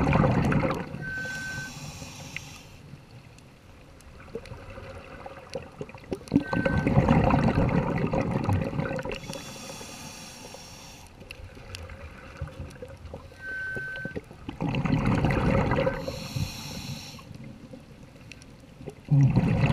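A scuba diver breathing through a regulator underwater: about three breaths, each a bubbling exhale followed by a hissing inhale, some inhales with a brief high whistle from the regulator.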